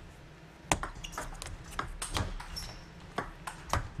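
Table tennis ball clicking sharply off the players' rubber-faced bats and the table in a fast rally, a quick run of crisp knocks from about a second in.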